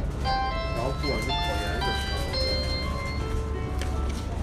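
A short electronic chime tune of bright, bell-like notes at changing pitches, ending near the end, over a steady low rumble of shop noise.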